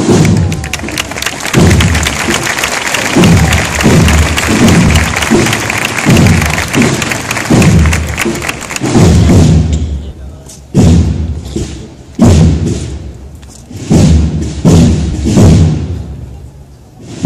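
Drums of a cornet-and-drum processional band: deep bass-drum beats about every 0.7 s, over a dense rattling hiss that drops away about ten seconds in, leaving the beats with sharp high strokes between them.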